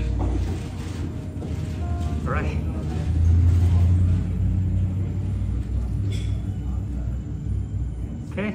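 Electric potter's wheel running with a low, steady rumble that swells about three seconds in while the spinning clay bowl is shaped by hand.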